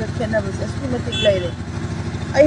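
A woman speaking, with a motor vehicle engine idling steadily underneath as a low, even pulse.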